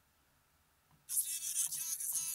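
Near silence for about a second, then playback of a German emo-rap vocal mix starts again. It sounds thin, almost only highs, as if heard through the top band of a multiband processor.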